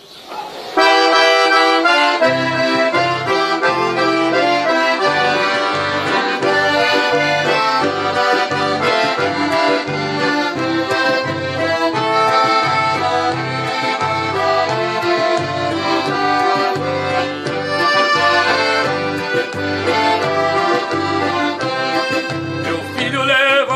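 Instrumental traditional gaúcho music led by a piano accordion and a button accordion, with acoustic guitars keeping a steady bass rhythm. It starts abruptly about half a second in, and the bass pulse comes in at about two seconds.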